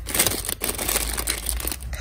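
Clear plastic bags of wax melts crinkling as a hand rummages through a box packed with them: a continuous dense crackle.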